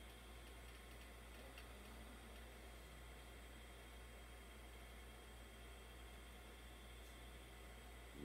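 Near silence: steady room tone with a low hum and faint high, thin tones.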